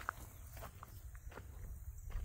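A few faint footsteps on gravel, spaced roughly half a second apart, over a low steady rumble.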